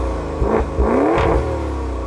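Maserati Levante Trofeo's twin-turbo V8 revved while parked: the exhaust note climbs from about half a second in, peaks near the middle, then falls back and holds steady at a lower pitch.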